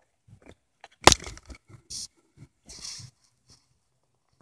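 Handling noise from a camera being moved by hand: scattered knocks and fabric rustles, with one sharp knock about a second in that is the loudest sound.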